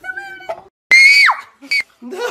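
A loud, high-pitched scream about a second in, lasting about half a second and falling in pitch at its end, followed by a brief second shriek.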